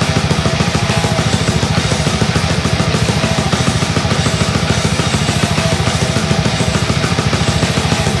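Death metal music in an instrumental passage: rapid, even bass-drum strokes with cymbals and distorted guitars.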